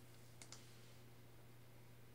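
Two faint clicks close together about half a second in: a computer mouse button clicked, over near silence with a faint steady low hum.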